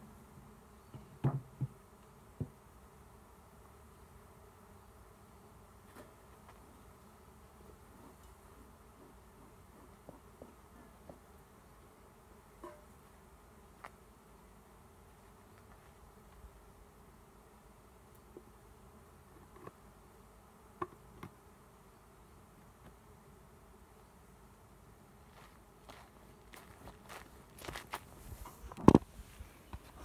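A swarm of honeybees buzzing steadily around the hive box. A few sharp knocks come near the start, and louder bumps and handling knocks come near the end.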